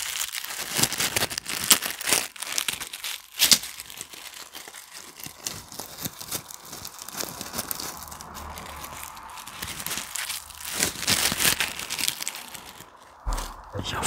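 Dried rose petals crinkled and rubbed between the fingers close to the microphone: a dry, papery crackling. It is densest in the first few seconds, thins out in the middle, picks up again and stops shortly before the end.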